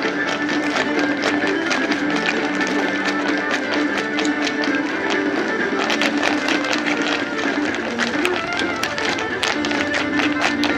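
Irish dance music playing while step dancers' shoes tap on pavement; the taps grow busier about six seconds in.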